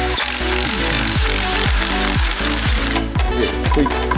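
A compact cordless impact wrench hammering on a scooter's steering-stem nut in one run of about three seconds, stopping near the end.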